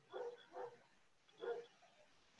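A dog barking faintly: three short barks, about a second apart at the end.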